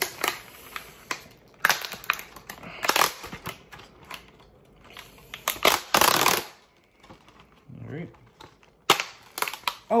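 Stiff clear plastic blister packaging of a 1/64 diecast car crackling and snapping as it is bent and pried open by hand. It comes as a run of sharp clicks, with a longer crinkle about six seconds in and a sharp snap near the end.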